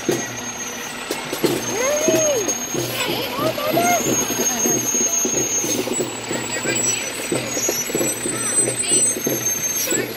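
Diesel engine of a fire department aerial ladder truck running as the truck rolls slowly past at close range, with a steady low rumble.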